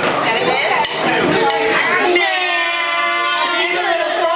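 Bar crowd chatter, then about halfway through a woman's voice on a microphone holds one long sung note that bends near the end.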